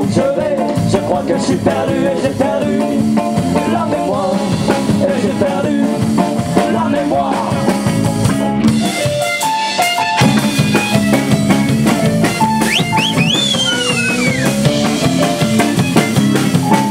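A live band playing a song with drum kit and voices. The low end briefly drops out about nine seconds in, and high sliding notes rise and fall near the end.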